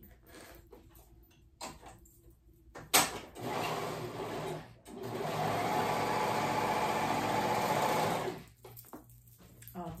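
Serger (overlocker) stitching a sleeve seam. A sharp click comes about three seconds in, then a short run of about a second and a half, then a steady run of about three and a half seconds that stops suddenly.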